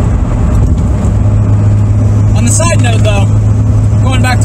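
Toyota MR2 being driven, heard from inside the cabin: its engine and road noise make a steady low drone.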